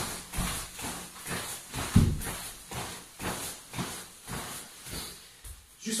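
Rapid, rhythmic swishes of a karate gi and taps of a foot on the floor, about three a second, as a knee is raised quickly over and over in a knee-lift drill. The loudest tap, with a dull thud, comes about two seconds in.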